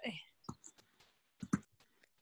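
Faint, soft speech in a few short fragments, close to a whisper.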